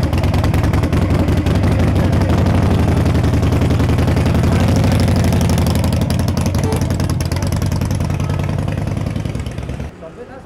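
Harley-Davidson motorcycle's V-twin engine running loud, with a rapid, even pulsing exhaust beat. The bike pulls away and the sound fades over the last couple of seconds.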